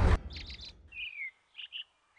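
Small birds chirping over an open rice field: short, high, separate chirps and one falling whistled note about a second in. A loud rushing noise cuts off sharply at the very start.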